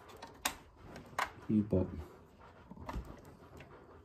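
Sharp plastic clicks from a white home internet modem and its cables being handled: three clicks spread over a few seconds.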